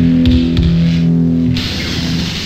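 Loud rock music with distorted guitar holding low notes. About a second and a half in the held notes stop and a denser, noisier passage takes over.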